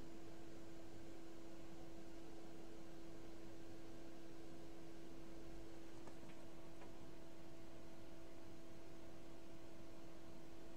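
Steady electrical hum made of a few held tones over faint hiss, with two faint clicks about six and seven seconds in.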